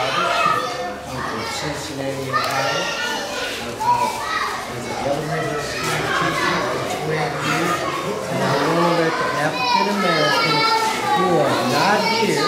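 Many children's voices chattering and calling out together, mixed with adults talking.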